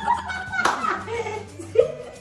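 A single sharp hand clap about a third of the way in, amid voices.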